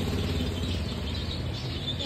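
Street background noise: a steady low rumble with a few faint high chirps.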